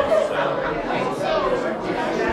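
Many people talking at once: a steady hubbub of overlapping conversations in a large room, with no one voice standing out.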